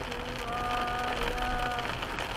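Car cabin noise from driving on a wet road in rain. A steady pitched note is held over it from about half a second in until near the end.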